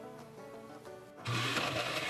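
Oster glass-jar countertop blender switching on about a second in and running at speed, blending yogurt, ice and nuts into a smoothie. Background music plays underneath.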